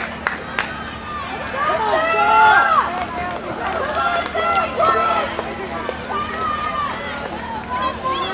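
Spectators cheering and shouting encouragement to finishing cross-country runners, several voices overlapping, loudest about two to three seconds in, with scattered hand claps.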